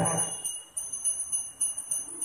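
Small metal bells ringing on without a break, with clear high tones; a sung phrase trails off right at the start.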